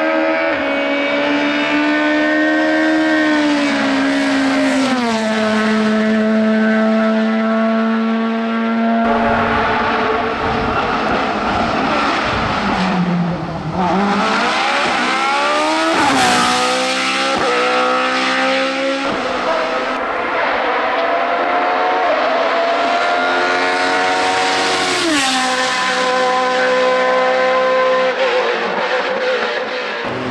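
Race car engines running hard uphill, one car after another: high-pitched engine notes climb and drop sharply at each gear change. In the middle a single-seater's note swoops down, then climbs through several quick upshifts.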